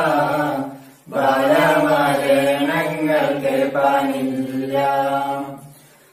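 Mixed voices of a man, a woman and two teenage boys singing a Malayalam Onappattu (Onam folk song) together in long held phrases. One phrase fades out about a second in, and a new one runs on until the voices fade away near the end.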